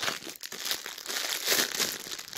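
Clear plastic bag crinkling and rustling continuously as it is handled, louder in surges.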